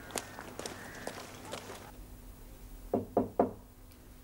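Three knocks on a door in quick succession, about three seconds in. Before them, outdoor street sounds with scattered light steps and clicks.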